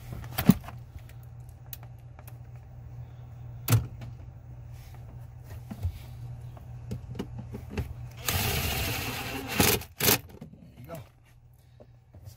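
Small cordless power driver with a 7 mm socket running a mounting bolt down for about a second and a half near the end, then a short second burst. Earlier come a couple of sharp knocks from the tool and parts being handled, over a steady low hum.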